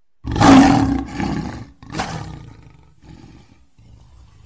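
Lion roaring: a loud roar starts about a quarter second in, a second shorter roar follows at about two seconds, then it trails off into a quieter low rumble.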